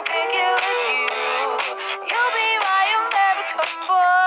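Pop song with a woman singing over a backing track. The sound is thin, with no bass.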